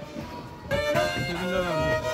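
Black Sea kemençe, a small upright bowed fiddle, playing a Black Sea folk tune. The playing comes in loud about two-thirds of a second in, with notes sliding from one pitch to the next.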